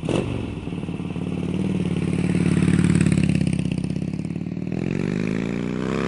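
Motorcycle engine revving with a pulsing beat: it climbs in pitch and loudness, eases back, then rises again near the end. A sharp crack comes at the very start.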